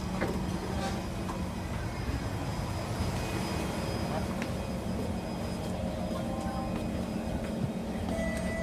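Steady electrical hum of an MRT train standing at the platform with its doors open, with the murmur and movement of passengers boarding and alighting.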